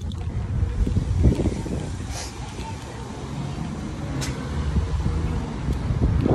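Wind buffeting a phone's microphone outdoors: an uneven low rumble that swells and fades, with faint street noise behind it.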